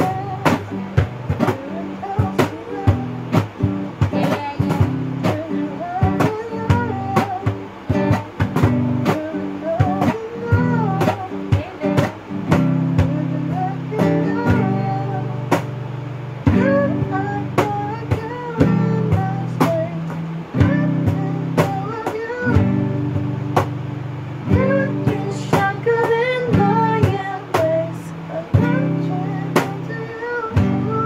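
Acoustic guitar playing chords with a cajón beating a steady rhythm under a singing voice: an unplugged pop cover.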